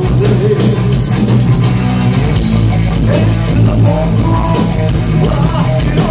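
A live rock band playing loud and without a break: electric guitar and drum kit over a heavy low end.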